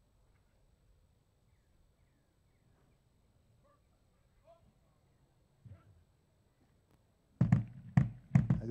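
A quiet lull with only faint scattered sounds, then about seven seconds in a sudden loud thump over the public-address microphone as a man's amplified voice begins.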